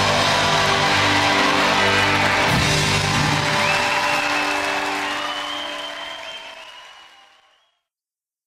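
Live rock band's closing chord ringing out over crowd applause, with a high held tone rising in about midway, then everything fading out over the last few seconds.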